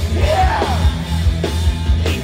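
Live rock band playing loud, with electric guitars, bass and drums under a sung vocal line whose pitch slides up and down; the low end is heavy.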